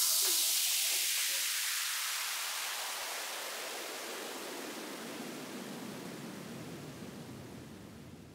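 Electronic white-noise sweep closing a DJ remix after the beat cuts out: a hiss that slides down in pitch and fades away steadily.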